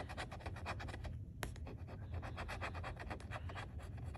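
Metal scratcher tool scraping the coating off a scratch-off lottery ticket in rapid back-and-forth strokes. There is a brief pause a little after a second in, then the scraping resumes.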